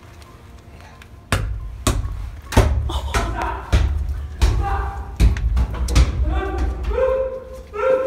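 A large ball dropped into a stone jail, bouncing with a series of heavy thuds, about seven of them at fairly even spacing, followed by voices near the end.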